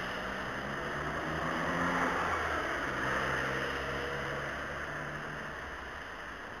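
Road traffic on a wet street: tyre hiss with a low engine hum, swelling about two seconds in and easing off near the end.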